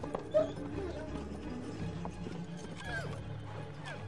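Horses moving on a forest floor, with hooves and the animals' own sounds, including a brief whinny-like call near three seconds, over a low, steady orchestral drone. A sharp click about half a second in is the loudest sound.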